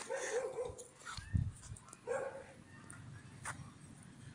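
Young pit bull terrier whining in several short, wavering whimpers, with a dull thump about a second and a half in.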